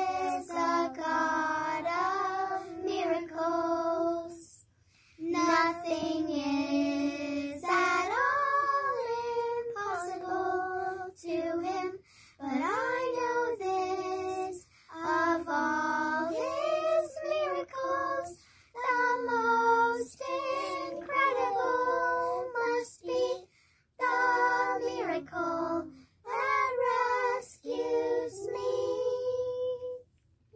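A group of children singing a song about Jesus's miracles together, phrase by phrase, with short silences between the phrases.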